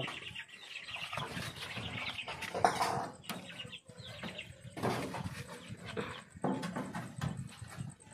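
Chickens clucking and calling at irregular moments, with a short, loud sound about two and a half seconds in.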